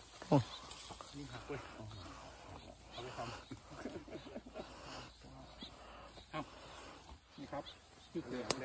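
Men talking in Thai in the open, mostly at a low level, with one loud, short burst of voice near the start.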